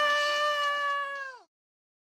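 A voice holding one long, high-pitched scream on a single note, which sags in pitch and cuts off about a second and a half in.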